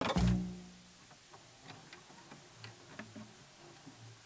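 Outro sound effect for a channel logo: a low booming hit at the start that dies away within a second, followed by faint scattered clicks and ticks with a few soft low blips.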